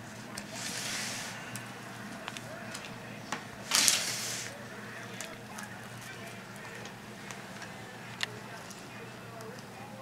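Knife cutting connective tissue and meat off a deer hindquarter on a cutting board: small clicks, scrapes and wet handling sounds, with a short rustle about a second in and a louder scraping burst about four seconds in, over a steady low hum.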